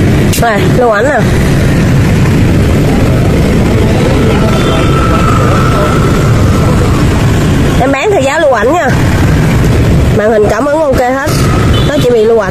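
A voice speaking in short stretches, about a second in and again from about eight seconds in. Under it a loud, steady low rumble runs throughout.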